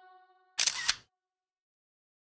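Camera shutter click sound: a short snap with two sharp clicks about a quarter second apart, about half a second in, as the last notes of background music die away.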